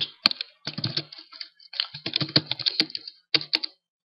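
Computer keyboard typing: quick runs of key clicks in about four bursts, with short pauses between them.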